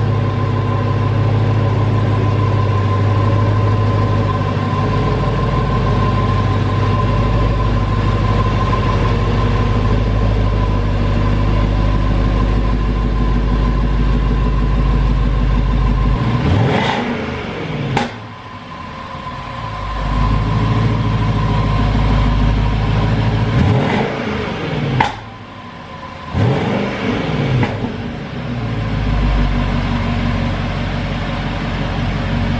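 Jaguar XFR's supercharged 5.0-litre V8 running at idle, then revved briefly about three times in the second half, each rev rising and falling quickly.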